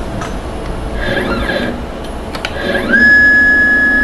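CNC mill's stepper-driven Y axis jogging in continuous mode: a brief high whine about a second in, then a whine that rises in pitch and holds steady and loud from about three seconds in. A couple of faint clicks in between.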